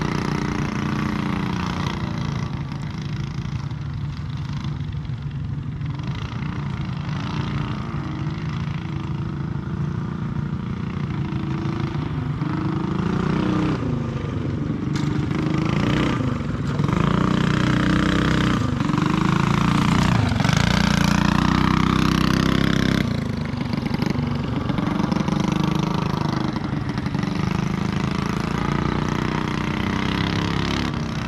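Small CycleKart engines running around a dirt track, their pitch rising and falling as the karts accelerate and slow for the corners. They are loudest for several seconds past the middle as a kart passes close, then drop away suddenly.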